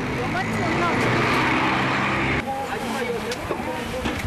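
Street-market hubbub: several people talking over the steady noise of a motor vehicle running close by. The vehicle noise cuts off abruptly about two and a half seconds in, leaving only the voices.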